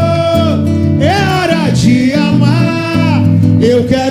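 Live samba: a man singing a romantic chorus over strummed acoustic guitar.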